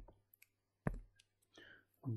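A few faint, sharp clicks, the loudest about a second in, with a soft short rustle or breath near the end.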